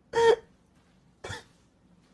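Two short bursts of a person's voice: a loud, pitched one just after the start, then a shorter, quieter one about a second later.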